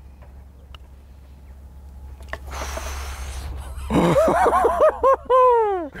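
A sharp click of a putter striking a golf ball about two seconds in. In the last two seconds a man gives a drawn-out, wavering vocal "ooh" of reaction, its pitch falling at the end.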